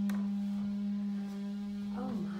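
A steady, low hum of one unchanging pitch, holding at an even level throughout.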